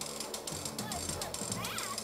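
Ball-lift mechanism of a large rolling-ball sculpture clicking steadily, about five clicks a second, as the ball is carried back up the tower.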